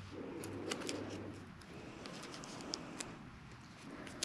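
Faint handling noise: light crinkles and small ticks as duct tape is pressed to fix a craft stick onto a cardboard lever arm.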